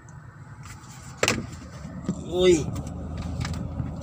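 Handling knock about a second in as a phone is pressed into place on a car dashboard, over the low rumble of the car; a brief voiced sound comes about halfway through.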